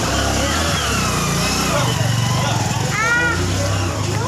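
An engine running steadily close by, a low rumble, with people's voices over it and a short call about three seconds in.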